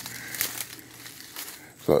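Footsteps rustling through dry fallen leaves, a crinkling patter with a few sharper crackles.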